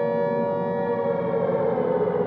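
Air-raid siren wailing on a held pitch that starts to sink near the end: the warning of an approaching air raid.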